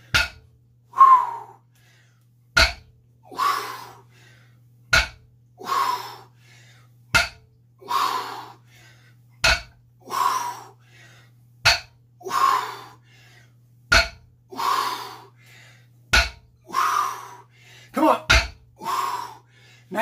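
Barbell deadlift reps, about one every two seconds: each begins with a short knock of the weight plates touching down and is followed by a forceful blown-out breath, nine times over. A steady low hum runs underneath.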